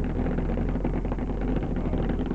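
Bass-heavy music from a car audio system heard on the car's roof, a deep, steady sub-bass from two JL Audio 10-inch subwoofers in a sealed enclosure standing out above the rest of the song.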